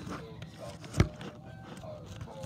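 A single sharp click about a second in, with faint handling noise around it.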